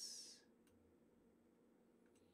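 Near silence: faint room tone, after a brief high hiss that fades out about half a second in.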